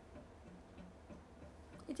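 A quiet room with a low steady hum and a few faint, scattered clicks. A woman's voice starts just before the end.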